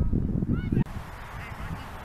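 Low rumble of wind on the microphone, with a few short honking calls about half a second in. The sound cuts off abruptly a little under a second in, leaving faint outdoor ambience.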